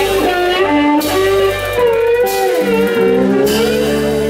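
Live blues band playing an instrumental passage: a lead electric guitar line with bent notes over bass and drums with ringing cymbals.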